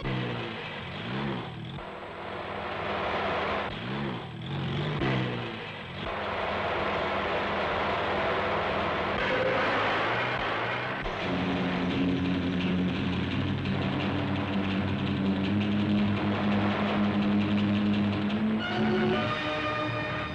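Film sound effects of a speeding car's engine, its pitch sweeping up and down several times in the first few seconds as it passes. A rushing noise follows, then a steady drone from about halfway, all mixed with background music.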